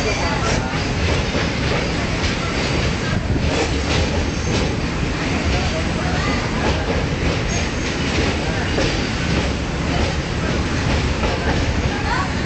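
Passenger train running over the Pamban rail bridge, heard from on board: steady, loud running noise of the carriage on the track.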